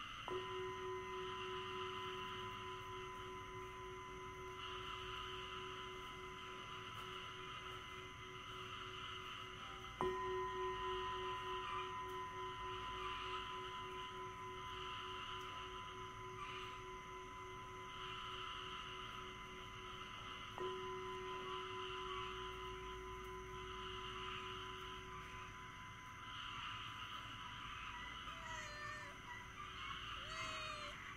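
A bell struck three times, about ten seconds apart. Each stroke rings on with a low tone and a higher overtone, the low tone wavering slightly as it slowly fades, marking the start of a meditation session.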